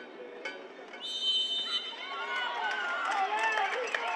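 Plucked-string anthem music ends about a second in, followed by a brief high steady tone. Then many voices shout and cheer over each other.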